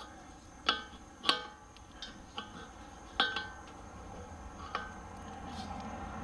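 Wrench and brass propane fittings clinking as a hose connection is threaded on and tightened: about four sharp metallic clinks with a short ring, spaced irregularly a second or two apart.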